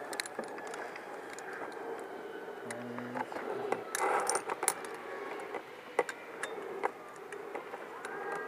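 Metal carabiners and lanyard hardware clinking and rattling against steel cable, a scatter of sharp clicks with a denser flurry about four seconds in, as climbing lanyards are handled and clipped in.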